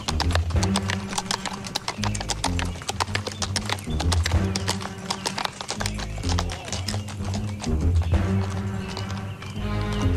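Horse hoofbeats clip-clopping as a sound effect over dark background music with a low bass line. The hoofbeats stop near the end, leaving the music.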